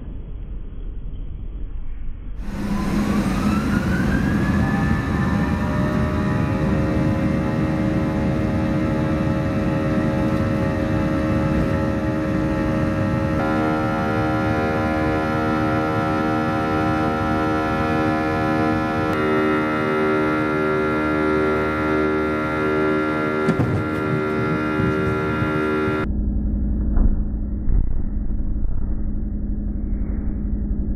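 A Boeing 737's turbofan engines heard from the cabin on takeoff. A whine rises over a couple of seconds as they spool up, then settles into a loud, steady drone of many layered tones that shifts a couple of times. A short muffled rumble opens the stretch and another comes near the end.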